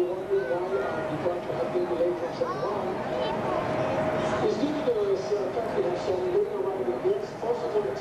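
Indistinct voices of people talking on a cruise ship's deck, over a steady hum.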